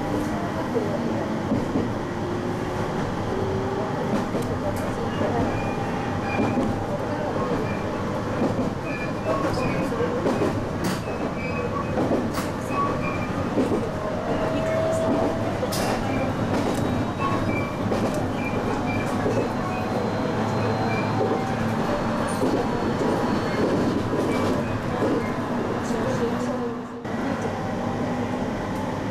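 Local train running, heard from inside the carriage: a steady rumble of wheels on the track with scattered sharp clicks over rail joints. A whine rises in pitch during the first few seconds as the train picks up speed.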